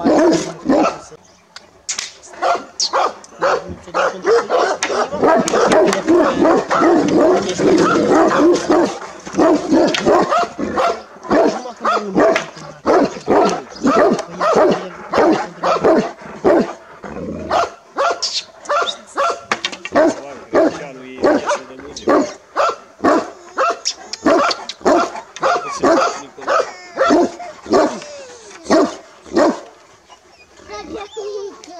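Romanian Raven Shepherd Dogs (ciobănesc corb), large black dogs, barking over and over: a dense run of barks at first, then separate barks about two a second.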